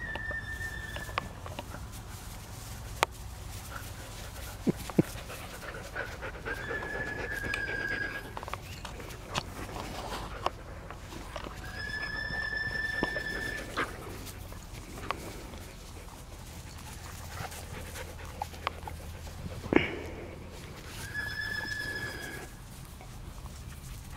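A dog whining in four long, high, level notes, a few seconds apart, with a few sharp clicks in between.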